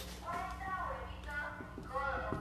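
Dry-erase marker squeaking across a whiteboard in a few short strokes, with light taps of the marker tip.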